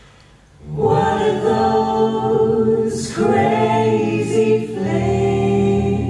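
Eight-voice a cappella jazz ensemble, two each of sopranos, altos, tenors and basses, singing close-harmony held chords. After a short hush they come in about a second in and sing three phrases with brief breaks between them.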